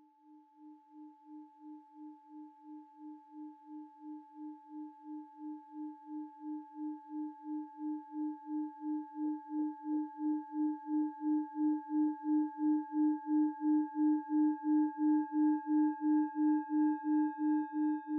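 Singing bowl sounding one sustained tone that swells gradually louder, pulsing steadily about three times a second, with fainter higher overtones ringing above it.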